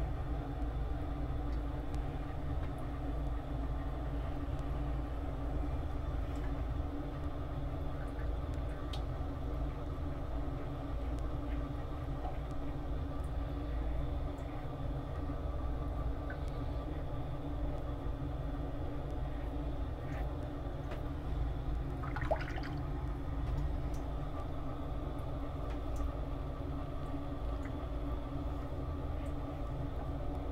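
Steady low rumble and hum, unchanging throughout, with a few faint clicks and one brief louder rasp about two-thirds of the way through.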